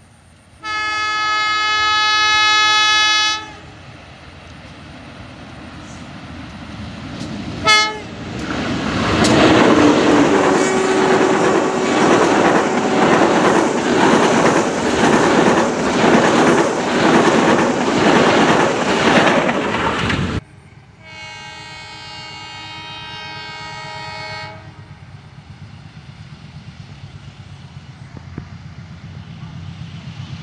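Diesel locomotive horn on the Sri Tanjung passenger train sounding one long blast, then a brief toot, before the train passes close by with loud wheel and coach noise and a rhythmic clatter over the rail joints, which cuts off suddenly. After that, a second train's horn sounds a fainter blast further off, followed by a low rumble as it approaches.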